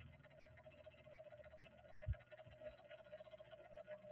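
Near silence: room tone with a faint steady hum and a brief low thump about two seconds in.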